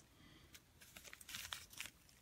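Near silence with a few faint crinkling rustles in the second half, like light handling of something near the microphone.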